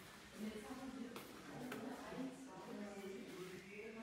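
Indistinct voices of people talking in the background, no words made out, with a couple of faint clicks about a second and a half in.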